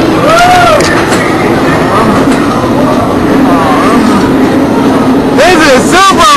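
Steel roller coaster train moving along its track with a loud, continuous rumble and rattle. A short voice-like call rises and falls about half a second in.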